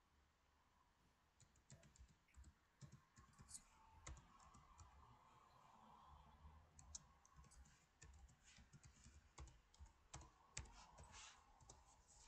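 Faint computer keyboard typing: short, irregular key clicks.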